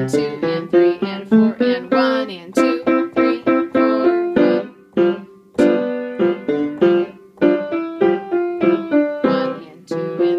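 Acoustic piano playing a tango-rhythm piece in staccato: short, detached notes and chords struck in a steady rhythm, with a few brief pauses between phrases.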